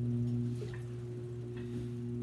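Electric potter's wheel running with a steady low hum, with two faint light taps in the middle.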